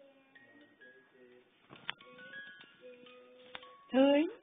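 Musical crib mobile playing a tinkling melody of single chime-like notes, with two sharp clicks in the middle. Right at the end a baby lets out a short, louder coo.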